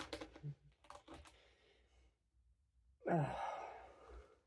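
A woman's breathy sigh, a loud 'ugh', about three seconds in, after a quiet stretch.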